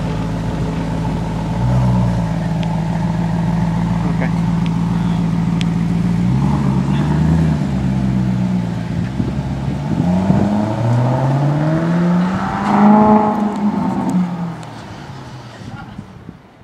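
Maserati GranCabrio's 4.7-litre V8 idling steadily, then pulling away. Its note rises in pitch three times as it accelerates up through the automatic's gears, loudest on the last rise, then fades as the car drives off near the end.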